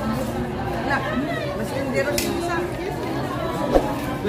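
Indistinct chatter of several people talking at once among restaurant diners, with one sharp click near the end.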